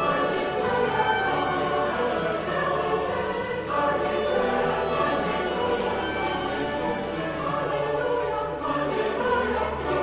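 A choir singing sacred choral music, voices holding sustained chords that move on without a break.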